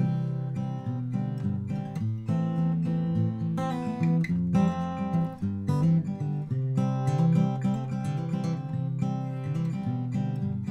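Acoustic guitar played through open chords with a walking bass line moving under them, the low notes changing every beat or so, decorated with little hammer-ons and pull-offs.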